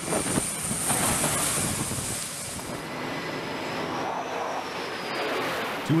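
Aircraft engine noise on a carrier flight deck: a steady, loud rushing noise, with a faint high whine rising slightly in pitch midway.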